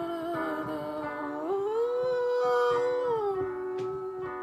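A man singing long, held wordless notes over digital piano chords. His voice slides up about one and a half seconds in and comes back down near the end.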